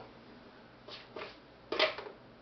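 Quiet room tone, broken by two faint short sounds in the middle and one brief louder sound near the end.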